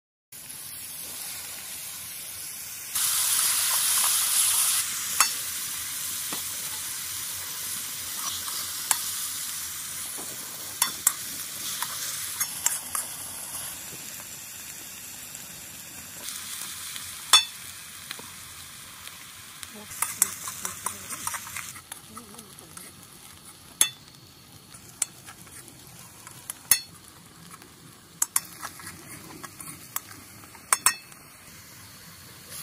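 Food frying in hot oil in a wok over a wood fire, sizzling with a steady hiss. The sizzle surges louder for a couple of seconds about three seconds in, then slowly dies down. A spoon clicks and scrapes against the pan now and then as the food is stirred.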